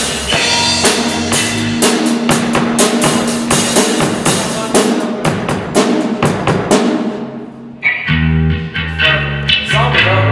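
A rock drum kit playing a busy pattern of snare, bass drum and cymbals, with an electric bass at first. The bass drops out after about a second and the drumming dies away near seven seconds in. About eight seconds in, the electric bass and drums start up again.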